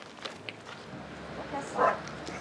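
A dog barks once near the end, a short, loud bark, after a couple of faint knocks.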